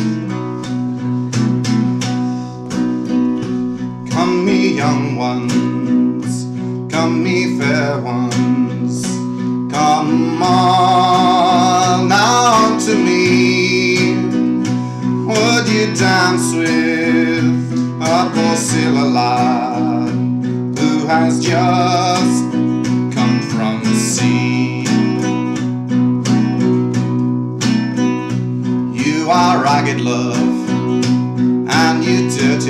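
Acoustic guitar played solo, a steady run of picked and strummed chords with a melodic line over them.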